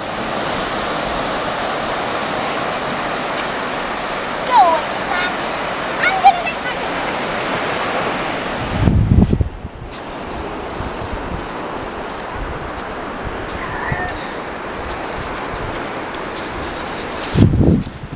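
Steady wash of surf and wind across an open sandy beach, louder for the first half and softer after, with low rumbles of wind on the microphone about nine seconds in and again near the end. Faint, brief children's calls come through now and then.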